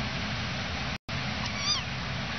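A kitten gives one short, high mew about one and a half seconds in, over a steady background hiss. The sound drops out completely for an instant about a second in.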